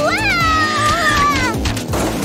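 Background music with a steady beat, over which a cartoon character gives a long wordless, worried 'ooh' that rises and then slides down in pitch, breaking off about one and a half seconds in.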